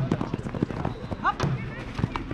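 Jugger time-keeping drum beating the count, two strikes about a second and a half apart, over quick irregular knocks and clacks as the players clash with their padded weapons. A short shout comes about a second in.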